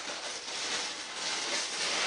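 Clear plastic bag rustling and crinkling steadily as a small sensor is pulled out of it by hand.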